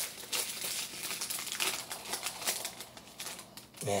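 Trading cards being handled and flipped through by hand, with crinkling from the opened pack wrapper: a quick, irregular string of rustles and flicks.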